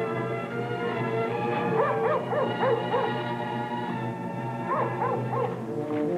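Orchestral music with held chords, and a dog barking over it in a quick string of short barks about a second and a half in, then a shorter run near the end.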